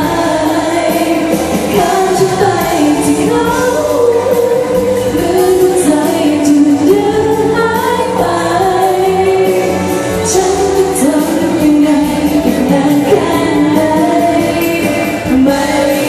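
A woman singing a Thai pop song live into a handheld microphone, over musical accompaniment.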